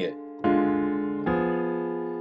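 Piano chords played by hand: a D diminished chord struck about half a second in, then an F diminished chord about a second later, each left ringing and slowly fading. They demonstrate inverting a diminished drop-2 voicing.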